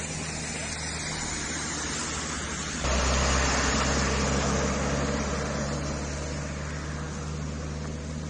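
Steady vehicle and road noise at a roadside: a low engine hum under a hiss of tyres on wet tarmac. About three seconds in it jumps suddenly louder, then slowly fades back.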